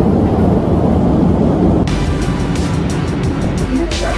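Steady, low drone of an airliner cabin in flight; about halfway through it gives way abruptly to background music with a beat.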